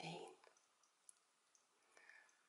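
Near silence while crocheting: a few faint clicks from a metal crochet hook being worked through yarn, after a short soft spoken word at the start.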